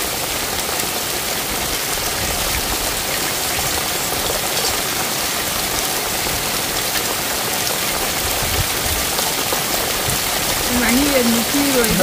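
Heavy rain falling steadily onto wet ground, an even hiss with no let-up.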